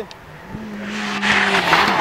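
Rally car approaching fast on a tarmac stage, its engine note growing steadily louder over about a second and a half as it nears, with rising tyre noise.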